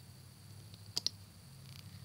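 Two sharp clicks close together about a second in, with a few faint ticks around them: a loom hook tapping the plastic pegs of an Alpha Loom as a rubber band is flipped over. A faint steady low hum of background noise runs underneath.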